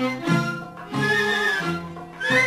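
Instrumental introduction by an Arabic orchestra: bowed strings play a melody of held notes in short repeating phrases, with the level dipping between phrases.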